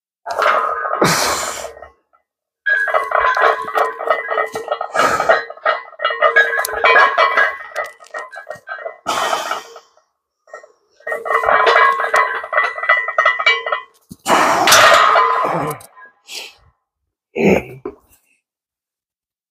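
A man straining through a heavy barbell bench press: two long pitched, pulsing grunts held for several seconds each, with loud breaths before, between and after them.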